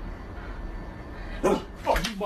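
A dog barking twice in quick succession near the end, two loud calls about half a second apart, after a stretch of quiet background noise.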